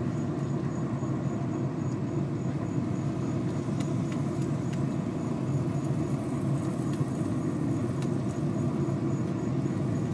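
Steady low hum of a pellet smoker's fan running, with a few faint light taps.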